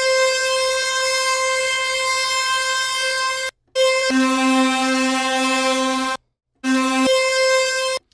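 Software sampler playing a sustained synth lead sample as held notes rich in harmonics, an octave above the root with the root note sounding along with it in parts. The notes stop and restart twice as the sampler's resampling emulation mode is switched.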